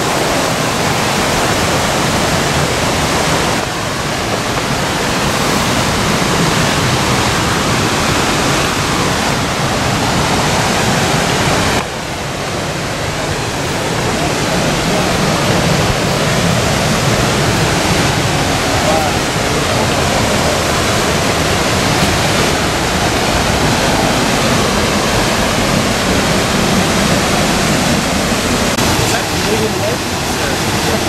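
Abrams Falls and its creek: a loud, steady rush of falling water.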